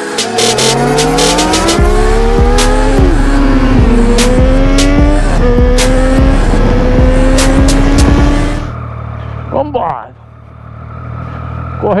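Motorcycle engine accelerating hard through the gears: its pitch climbs, falls sharply at each upshift and climbs again, mixed with a music track with a heavy bass beat. The montage sound cuts off suddenly after about nine seconds, leaving quieter riding noise and a man's voice near the end.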